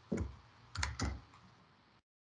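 Computer keyboard keystrokes entering a pasted link into a browser's address bar: one key right at the start, then three quick clicks about a second in.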